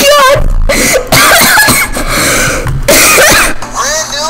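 Loud, deliberately silly singing by one voice, sliding up and down in pitch, broken by short rough cough-like bursts.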